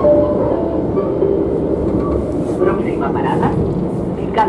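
Renfe series 450 double-deck electric commuter train running, heard from inside the carriage: a steady rumble of the wheels on the track.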